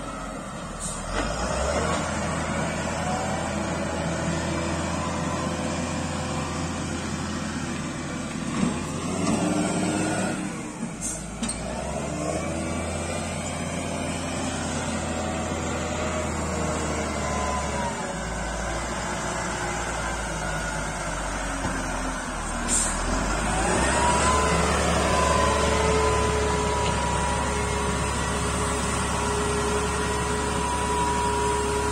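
Wheel loader's diesel engine running and revving as the machine drives and works its bucket. About three-quarters of the way through, the engine rises in pitch and loudness and then holds a steady higher whine.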